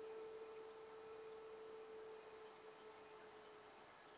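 Near silence: faint room tone, with a thin steady hum that fades out near the end.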